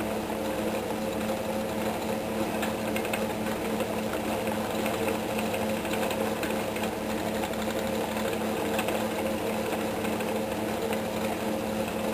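Small electric spinning wheel running steadily, a motor hum, as it twists silk and alpaca strands into plied yarn. Faint clicking sounds behind it.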